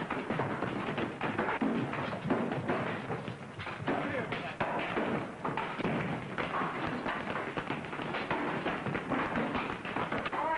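Indistinct voices mixed with repeated thumps and knocks: a busy commotion with no clear words.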